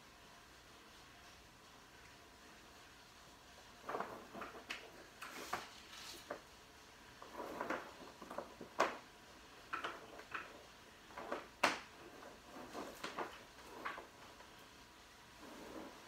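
Hands handling computer cables and hardware: a scattered run of short clicks, knocks and rustles starting about four seconds in and dying away near the end.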